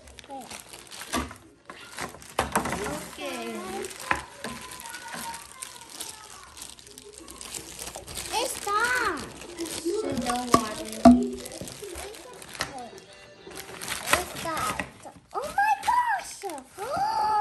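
Crinkling and rustling of the pink wrapping being pulled off a Barbie Color Reveal doll and out of its plastic tube. A young child's voice exclaims and chatters at intervals.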